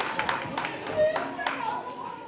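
An audience of children clapping, the applause thinning to a few scattered claps and dying out about one and a half seconds in, with voices over it.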